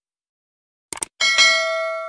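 Subscribe-button animation sound effect: a quick double mouse click about a second in, followed at once by a bright bell ding that rings on and slowly fades.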